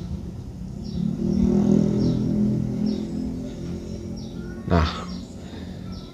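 A motor vehicle's engine running close by, louder through the middle and then fading, with faint short high chirps repeating about once a second.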